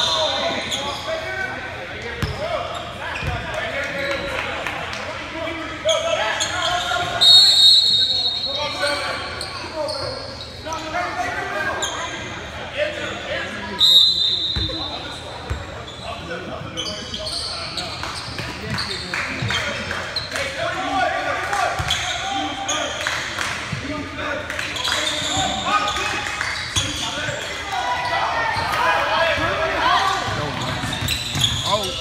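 Basketball game on a hardwood gym court: the ball bouncing, a few short high sneaker squeaks, and indistinct voices of players and spectators, echoing in the large gym.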